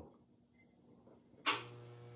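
A glazed stoneware mug being handled: quiet, then a single sharp click about one and a half seconds in, with a faint low hum after it.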